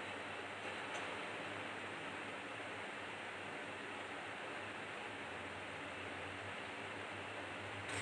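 Quiet, steady hiss with a faint low hum: kitchen room tone, the dough being folded making little audible sound.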